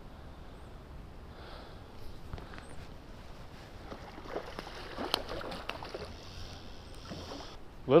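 Faint creek water sloshing and splashing close to the microphone, with a few light clicks and knocks scattered through it.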